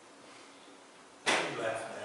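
Quiet room tone in a church hall, then a little over a second in a man's voice breaks in suddenly and loudly, an untranscribed outburst such as a laugh or exclamation.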